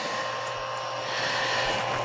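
Chugger magnetic-drive brewing pump running steadily: an even electric motor hum with a few constant tones, pumping water in a flow test.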